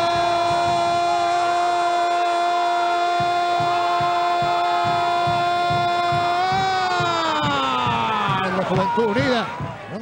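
Football commentator's long drawn-out goal shout ("gooool"), held on one high note for about six seconds, then sliding down in pitch and breaking up near the end, with crowd noise underneath.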